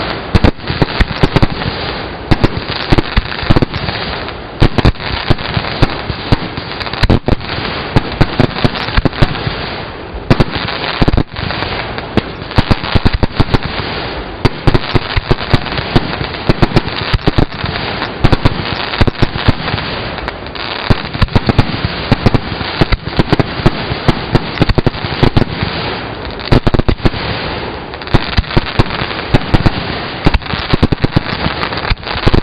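Aerial fireworks display: a dense, continuous barrage of shell bursts and crackling reports, many per second, very loud.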